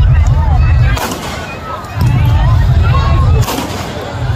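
Aerial fireworks bursting overhead: sharp bangs about a second in and again past three seconds, with heavy low booming rumble between them that overloads the phone's microphone.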